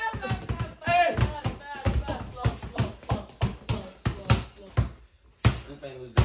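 A basketball dribbled hard and fast on a concrete garage floor: a quick run of bounces, about four a second, with a short break near the end.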